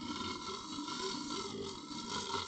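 A man imitating a lion's roar with his own voice, as a homemade stand-in for the MGM lion: one long roar.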